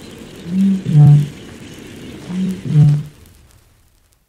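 Eurasian bittern booming: two deep calls about a second and a half apart, each a short note followed by a deeper, louder one. The sound fades away near the end.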